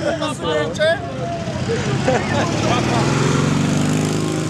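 An off-road 4x4's engine revving up, its pitch rising steadily and growing louder over the last couple of seconds as it accelerates.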